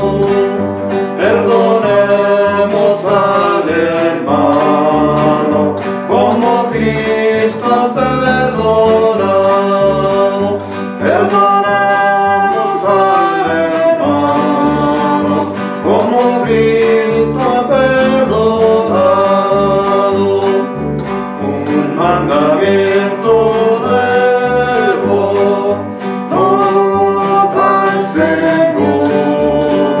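Acoustic guitar strummed in a steady rhythm and an upright double bass plucked underneath, accompanying singing.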